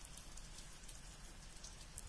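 Faint steady hiss with a low hum beneath it, no distinct events: quiet background noise.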